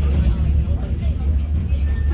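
Bombardier M5000 tram running along street track, heard from inside the passenger saloon as a steady low rumble.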